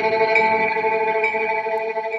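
Channel intro music: a held, effects-laden chord with a light note repeating about twice a second.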